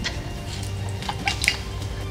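Background music under the show, with a few short clicks and taps of kitchen work a little past the middle.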